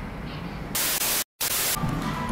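A loud burst of hissing white-noise static, about a second long, cut by a brief total dropout in the middle and ending suddenly: an edited-in static glitch transition effect.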